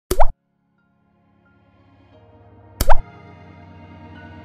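Two loud water-drop plop sound effects, each a short blip sweeping upward in pitch, about two and a half seconds apart, with soft music fading in underneath from about halfway through.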